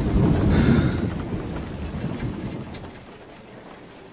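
A harsh, rumbling noise effect, loud at first and fading away steadily over about three seconds.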